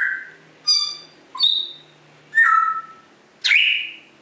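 African grey parrot whistling: a run of five short, clear whistles, some sliding down in pitch, the last a quick upward sweep.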